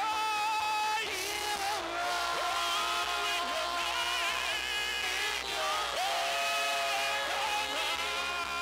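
Live worship music: a lead singer and backing vocalists holding long, gliding sung notes over steady instrumental accompaniment.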